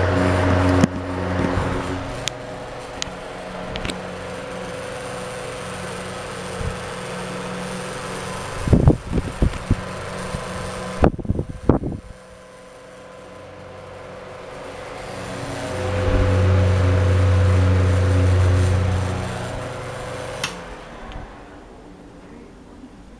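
Electric fans running: a steady motor hum and rush of air. A cluster of clicks and knocks comes partway through, the hum drops, then it swells loud for a few seconds and fades near the end.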